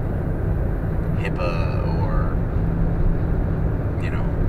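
Steady low road and engine rumble inside a moving car's cabin, with a short stretch of a voice a little over a second in.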